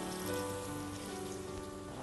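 Background music with sustained notes, over a steady crackling hiss of onions and octopus frying in oil in a pot.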